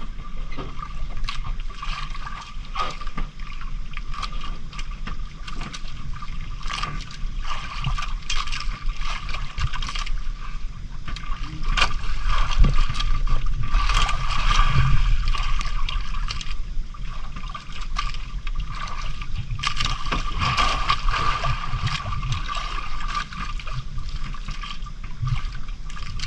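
Sea water sloshing and lapping against the hull and outriggers of a small outrigger fishing boat, with scattered sharp knocks and splashes. A steady faint hum runs underneath.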